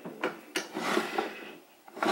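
Small wooden drawers of a jewelry box being slid open and pushed shut by hand: a rubbing slide with a few light wooden knocks as they close.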